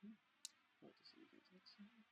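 Near silence broken by one sharp computer mouse click about half a second in, followed by a few faint softer ticks, with faint low murmuring voice underneath.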